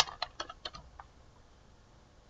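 Computer keyboard typing: about six quick keystrokes that stop about a second in.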